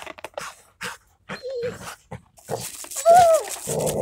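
Two Rottweilers licking and gnawing at a slab of ice, making scattered sharp scraping clicks. A short, arched whine about three seconds in is the loudest sound.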